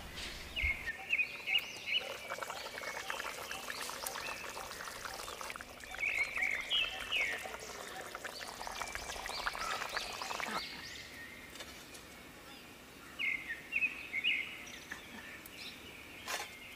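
Birds chirping in three short bursts, with a dense crackling noise from about two seconds in that stops abruptly near the middle.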